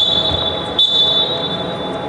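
Referee's whistle blown twice in quick succession, a shorter blast and then one lasting about a second, with a steady high pitch, signalling a stoppage in play. It sounds against the echoing hall background.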